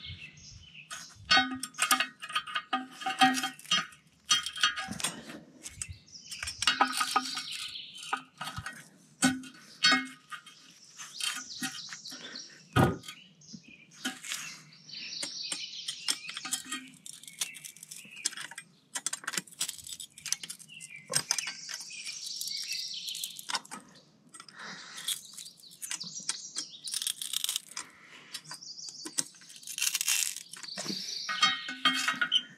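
Heavy metal barbecue grates clanking, scraping and ringing briefly in irregular knocks as they are worked into place on an above-ground fire pit. Birds chirp in the background.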